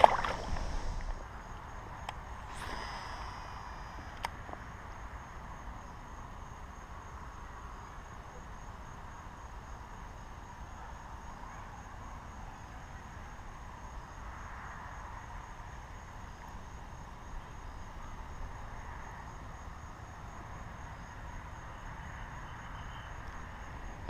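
A released largemouth bass splashing back into the pond at the very start. Then a faint, steady outdoor background hiss, with a couple of light clicks a few seconds in.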